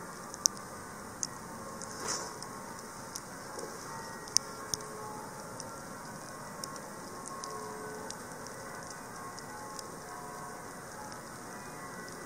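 Distant noon bells ringing faintly, heard as scattered held tones over a steady outdoor hiss. A few sharp clicks stand out, the loudest about half a second in and again about four seconds in.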